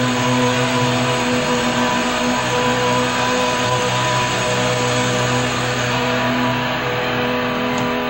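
Live rock band holding a steady droning wash of distorted electric guitar noise, with sustained notes and no clear beat.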